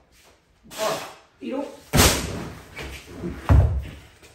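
A heavy natural lifting stone dropped from the shoulder onto the gym floor. There is a sharp slam about two seconds in, then a louder, deeper thud about a second and a half later, with vocal grunting before the impacts.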